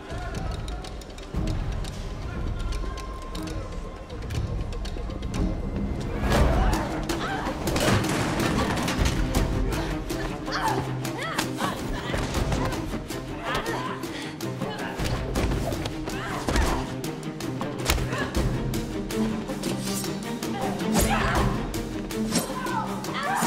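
Tense film score with the thuds and scuffles of a hand-to-hand fight, which set in about six seconds in and come thick and fast from then on.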